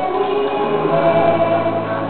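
Several voices singing together in long held notes, like a small choir, with a low note coming in about a second in.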